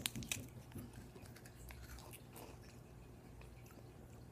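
Faint biting and chewing of a frozen popsicle: a few sharp, crunchy clicks in the first second as it is bitten, then quiet chewing.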